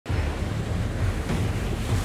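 Sea water rushing in a submarine's bow wave and wake, with wind and a low rumble underneath.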